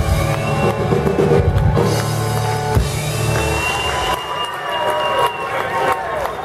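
Live rock band playing with drum kit and guitars; about four seconds in the bass and drums drop out, leaving higher ringing and wavering tones.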